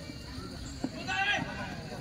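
A single sharp knock just under a second in, then a brief high-pitched shout over a low background murmur of voices.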